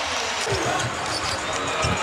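A basketball bouncing on a hardwood court a few times, heard as dull thumps over the steady noise of an arena crowd.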